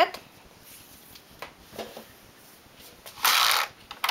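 Waste yarn being laid by hand across the needles of a knitting machine: a few faint clicks, then a brief loud rush of rustling noise about three seconds in.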